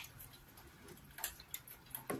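A few faint, short wet clicks from eating cocoyam fufu with ogbono soup by hand, the clearest about a second and a quarter in.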